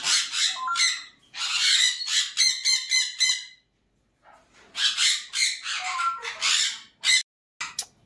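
Pet parrots giving loud, harsh calls in two runs of a few seconds each, the first fading about three and a half seconds in, the second starting near five seconds and stopping about seven seconds in.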